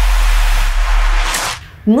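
TV show title-card transition sound effect: a loud whoosh of noise over a deep bass rumble, fading out about a second and a half in.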